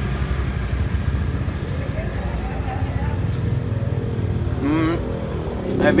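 Motor-vehicle engine rumble from street traffic, steady and low throughout, with a brief hum from the taster about five seconds in.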